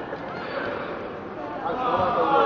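High-pitched shouts and chatter of children and spectators, echoing in a large sports hall over a steady crowd hubbub; the shouting grows louder near the end.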